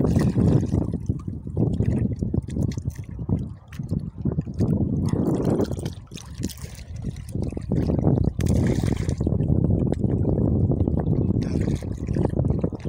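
Sea water sloshing and splashing around a person standing chest-deep in it, uneven, with brief lulls and a brighter splash a little past the middle.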